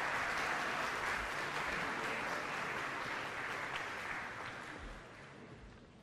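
Audience applauding at the end of a speech, dying away over the last two seconds.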